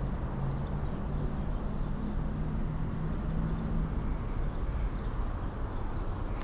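Steady rumble of traffic crossing the concrete highway bridge overhead, with a low engine hum that fades after about four seconds.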